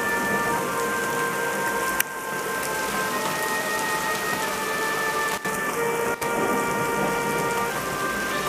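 Heavy thunderstorm rain pouring onto a paved street, a steady dense hiss. A sharp click about two seconds in, after which the rain is slightly quieter.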